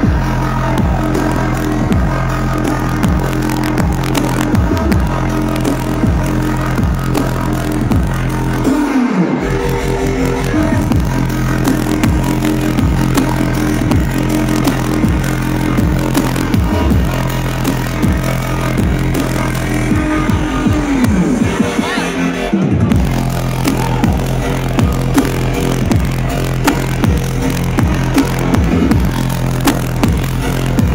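Loud, bass-heavy electronic dance music in a dubstep style, played live over a large sound system. The heavy bass drops out briefly twice, about nine seconds in and again a little after twenty-two seconds, each time after a falling sweep, then comes back in.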